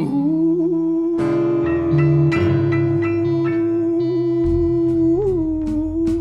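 Live blues band playing: one long note held steady over a changing bass line, with drum and cymbal hits coming in near the end.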